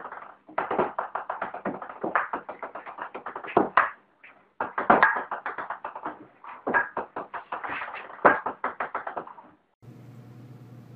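Table-tennis ball clicking in rapid succession as it bounces on the table and off the paddle during a fast rally. The rally breaks off briefly about four seconds in and again just before the end.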